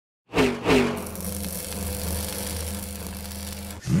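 Car exhaust blipped twice in quick succession, each rev falling away, then settling into a steady idle, with a new rev rising just before the end.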